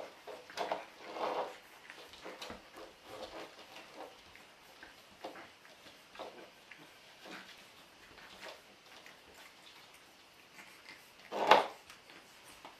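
Four-week-old puppies playing and scuffling on a tile floor: small scrabbling and scattered short puppy sounds, busiest in the first couple of seconds, with one loud sharp sound shortly before the end.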